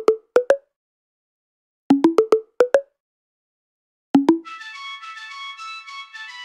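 Short, plucky pitched synth notes from a 'Collider Down Pipe' preset, played in quick groups of four or five about every two seconds with silence between. About four and a half seconds in, a sustained synth flute melody enters.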